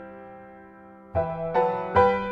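Background piano music: a held chord slowly fading, then new chords struck about a second in and again near the end.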